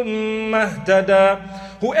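A man reciting a Quranic verse in Arabic in a slow, melodic chant, holding long steady notes and stepping between pitches. Spoken English begins near the end.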